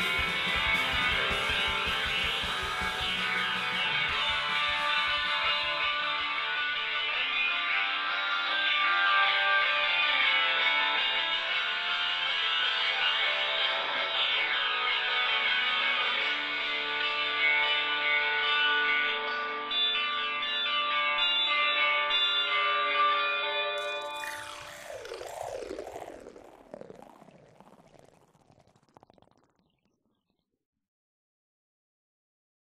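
Rock band recording playing the end of a song, a dense layered texture of sustained pitched notes. The low end drops away about four seconds in; near the end a falling, swooping sound takes over and the music fades out to silence.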